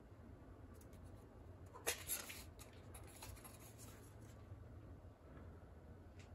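Quiet handling of a folding replica caber prop, with one sharp click about two seconds in and a few faint ticks after it, as the blades are shut and its built-in magnets snap them into position.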